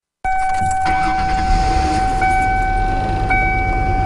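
After a brief dead silence, a steady high tone starts and holds over a low rumbling noise; two higher overtones of the tone cut in and out about once a second.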